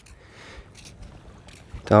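Faint steady outdoor background noise with a few soft knocks, then a man's voice begins near the end.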